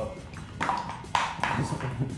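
Plastic quart bottle of motor oil being handled and opened: two short rasping scrapes, the second starting sharply just after a second in.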